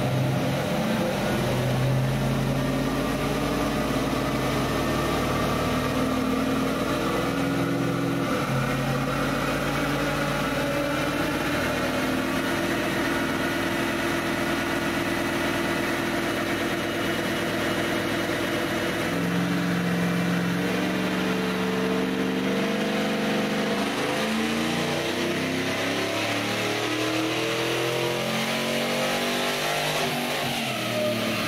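A 6.2-litre LS3 V8 with a VCM 532 cam, swapped into a Toyota 80 Series Land Cruiser, running under load on a chassis dyno. Its pitch steps down about eight seconds in, steps up again around twenty seconds, then climbs steadily as the revs rise near the end.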